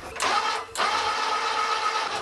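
Electric motor drive on the WAL-LE prototype's wheel and suspension arm, whirring with a steady whine as it moves the wheel. It runs in two stretches: a short one, a brief break just under a second in, then a longer one.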